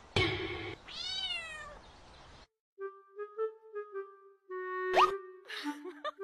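A cat's loud cry right at the start, one arching yowl lasting about a second, which then cuts off abruptly. After a short gap comes light plucked background music, with a quick rising boing effect near the end.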